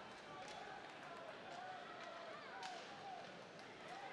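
Faint ice hockey arena ambience: indistinct crowd voices, with a couple of sharp clicks of stick and puck on the ice.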